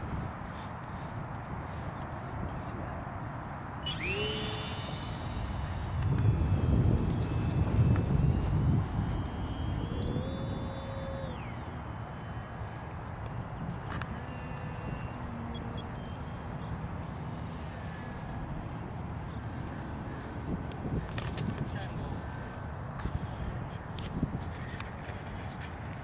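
Electric motor and propeller of an F5K RC sailplane starting suddenly at launch: a high whine, rising slightly in pitch as the plane climbs, runs about seven seconds and then cuts off, leaving it gliding silently.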